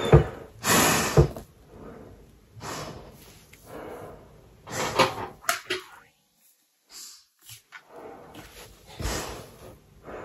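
Handling noise from a full-face snorkel mask being pulled on and adjusted: plastic and silicone rubbing against the face and hair, with a few soft knocks, in short bursts with a brief silent gap near the middle.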